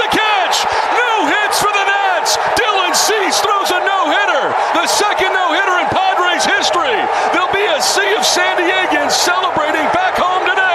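Radio play-by-play of a baseball game: the announcer calls excitedly over a cheering ballpark crowd just after the game-ending catch in the outfield.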